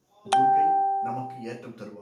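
A single bell-like chime sounds once, with a sudden start and a clear tone that rings out and fades over about a second. A voice comes in over its fading tail.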